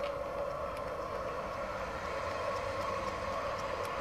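A steady, even background drone with no clear events, like distant traffic or a mechanical hum outdoors at night.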